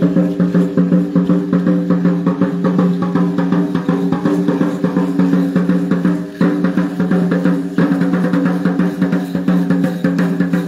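Drumming for a traditional Mexican danza procession: drums beaten in a fast, steady beat with a sustained low ring, briefly dropping about six seconds in.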